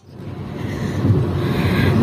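Road and engine noise inside a moving car, a steady low rumble that fades in over about the first second and then holds.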